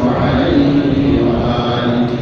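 A man's voice chanting a melodic religious recitation, holding long notes one after another.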